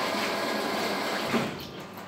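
A steady rushing noise, even and without any pitch, that fades away about one and a half seconds in.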